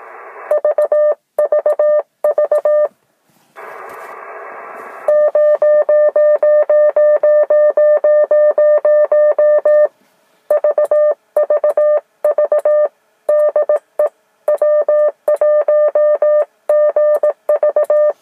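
A Morse code (CW) signal on the 30-metre amateur band, coming from the Yaesu FT-857D transceiver's speaker: one steady beeping tone keyed rapidly on and off in dots and dashes. A short stretch of band noise hiss comes between the keyed groups about four seconds in.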